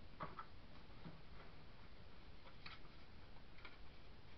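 Faint, irregular light clicks and taps of paper and card pieces being handled and placed on a table, over a steady low hiss.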